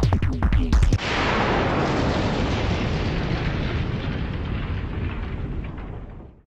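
Electronic music with a heavy, pounding beat that stops about a second in. It gives way to a long, noisy sound effect of the kind used under a studio logo, which slowly fades away.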